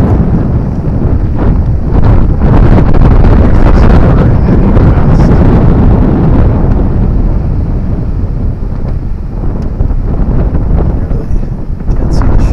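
Loud wind buffeting on the microphone: a dense, low rumble with no clear tones, steady throughout with small dips.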